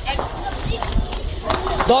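Shouting voices of players and onlookers at a street cricket game, with a few sharp knocks and a low rumble on the microphone. Near the end a voice starts calling 'daud!' ('run!').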